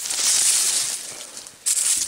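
Dry leaves and currant twigs rustling and crunching as pruned branches are handled. There is one long rush of over a second, then a shorter one near the end.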